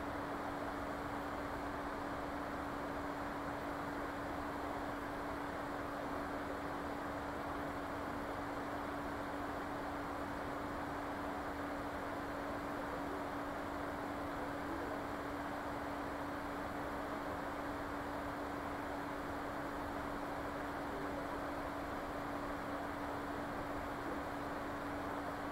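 Steady background hiss with a constant low hum underneath, unchanging throughout, with no other sounds.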